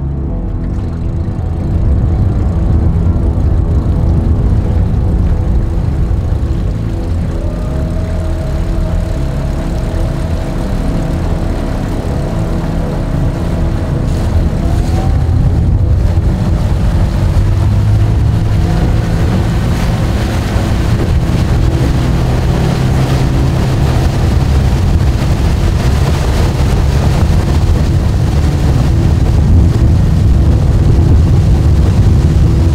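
Tohatsu 20 hp four-stroke outboard motor running under way at a steady cruising speed. It gets louder about two seconds in and then holds steady.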